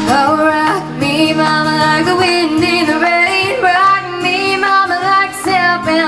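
A young woman singing a country melody with a wavering, gliding voice over chords strummed on a steel-string acoustic guitar.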